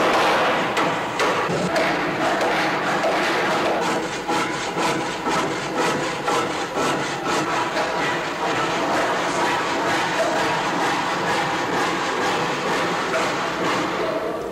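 Renovation work in a hall: repeated hammer knocks on wood, over a dense, steady din of work noise.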